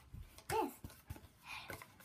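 A child's brief vocal sound about half a second in, with a few light knocks and rustles from handling a long cardboard tube.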